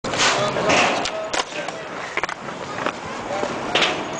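Skateboard wheels rolling over concrete, with several sharp clacks of the board hitting the ground.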